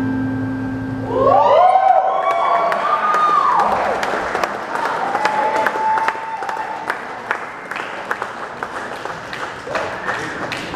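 An acoustic guitar's last chord rings out and stops. Then an audience cheers with whoops and claps steadily.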